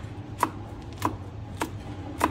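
Knife slicing red chillies on a wooden cutting board: three evenly spaced knocks of the blade on the board, a little under two a second.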